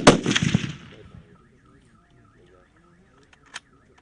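A single sniper rifle shot: a sharp crack and loud report right at the start that echoes and dies away over about a second. A few short clicks follow near the end.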